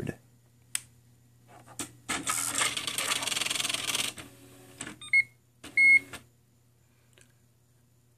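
IBM Personal Wheelwriter 2 electronic typewriter powering up: a click, then about two seconds of mechanical whirring as the carrier and printwheel run through their start-up reset, followed by two short clacks with a brief high beep.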